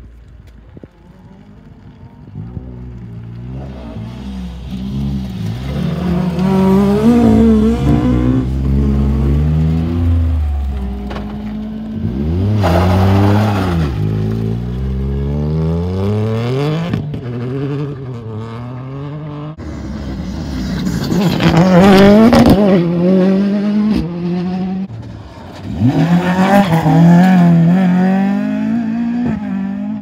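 Ford Fiesta rally car engine revving hard at stage speed, its pitch climbing and dropping again and again through gear changes and lifts. It starts faint, gets loud from about four seconds in, and stays loud to the end.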